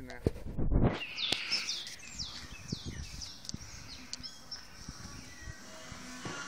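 Songbirds chirping: a run of short, high, downward-sweeping chirps from about one to four seconds in, after a brief low rumble on the microphone at the start.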